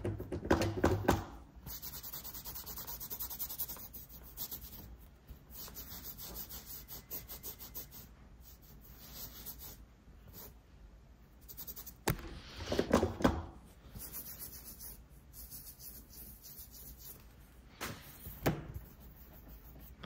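Rubbing and scraping of nail-stamping tools being wiped and handled on a silicone mat, with a sharp tap about twelve seconds in, a cluster of light knocks just after, and another knock near the end.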